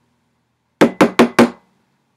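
Four quick knocks in a rapid, even run about a second in.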